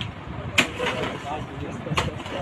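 Two sharp strikes of a short-handled digging hoe biting into packed earth and rubble, about a second and a half apart.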